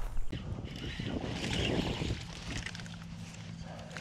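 Wind noise and rustling on the microphone as the camera is moved, loudest in the first two seconds, then settling to a lower steady rumble.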